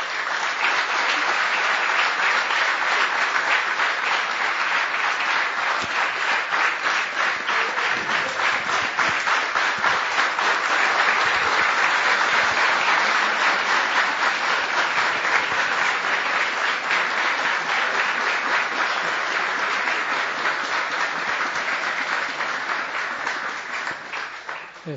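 Audience applauding: dense, steady clapping that starts at once and tapers off near the end.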